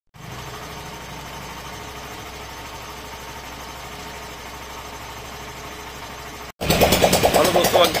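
Hero Glamour Xtech motorcycle's 125 cc single-cylinder engine idling steadily. It cuts off abruptly about six and a half seconds in, and a man starts speaking.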